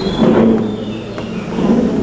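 A man talking, his voice broken by short pauses, with a couple of faint short clicks.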